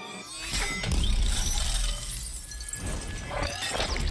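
Film sound effects of a building coming down: debris crashing and shattering over a deep rumble, starting about a third of a second in.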